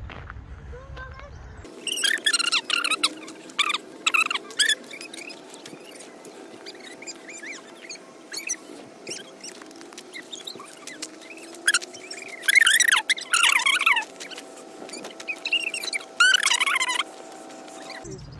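Small birds chirping and singing in short, irregular high-pitched phrases over a faint steady hum, outdoors in a wintry park.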